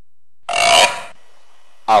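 A single brief, loud vocal sound about half a second in, lasting about half a second.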